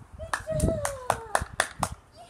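Hands clapping in a quick, even rhythm, about four claps a second, to call a dog. Over the claps a person's voice makes a long, high, wordless call that slowly falls in pitch.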